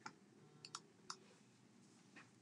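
Near silence with a few faint, short clicks, as paper craft pieces are handled on a cutting mat.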